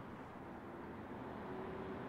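Quiet outdoor background noise: a steady low hiss and rumble with a faint hum.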